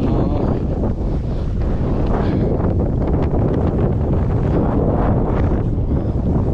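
Wind buffeting the camera's microphone: a loud, steady low rumble.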